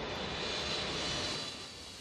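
Jet airliner passing low overhead: a steady rushing whine of jet engine noise that eases off a little near the end.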